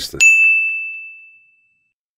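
A single bright bell-like ding, struck once and ringing out on one clear high note that fades away over about a second and a half. It is an edited-in sound effect marking a 'CHALLENGE' segment title.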